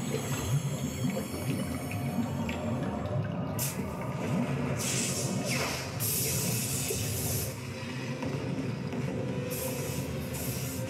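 Cartoon soundtrack: music under rushing, gushing water effects as a column of water is blasted up out of a well by magic, with louder bursts of hiss about four and five seconds in and again near the end.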